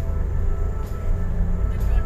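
Cabin noise of a 2016 Toyota Avanza Veloz 1.5 automatic on the move: a steady low rumble of its four-cylinder engine and tyres on the road.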